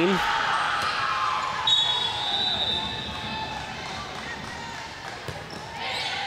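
Volleyball gym ambience echoing in a large hall: volleyballs thudding on the hard floor and players' voices, with a brief high steady tone about two seconds in.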